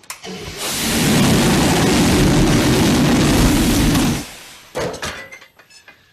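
A rocket-belt jetpack firing: a loud rush of rocket thrust with a deep rumble. It swells in over about half a second, holds steady for about three and a half seconds, then cuts off sharply.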